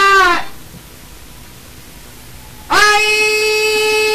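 A male Albanian folk singer's voice. A sung phrase ends on a falling note, a couple of seconds of faint hiss follow, and then a high note starts suddenly about two and a half seconds in and is held steady.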